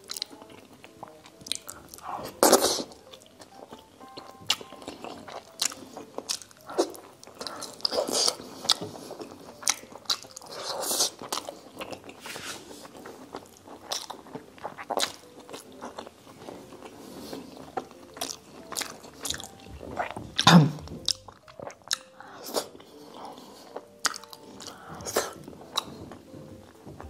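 Close-up chewing and wet mouth sounds of someone eating pork and rice by hand: frequent short bites, smacks and clicks. There is a louder low thump about three-quarters of the way through.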